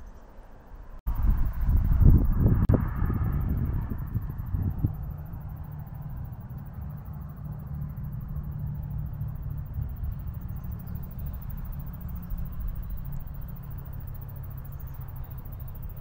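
Outdoor rumble, mostly low. After a cut about a second in it gets louder for a few seconds, then settles into a steady low hum.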